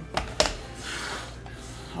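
Two sharp plastic clicks, then a brief scrape, as a hard clear plastic card holder is handled and opened.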